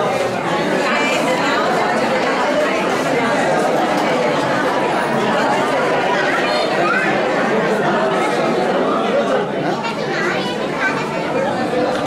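Many people talking at once, a steady crowd chatter echoing in a large hall.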